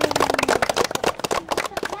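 A fast rattle of clicks, mixed with a voice, thinning out near the end.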